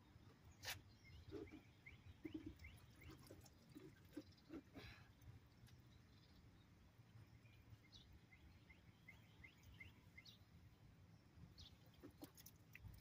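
Near silence: faint bird chirps in two quick runs of short notes, one near the start and one about two-thirds through, over a low background rumble, with a few light clicks.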